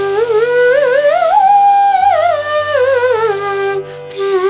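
Chitravenu slide flute playing one continuous phrase: it climbs in small ornamented, wavering steps to a held high note about midway, then slides back down step by step to the starting note and stops just before the end. A steady drone sounds underneath.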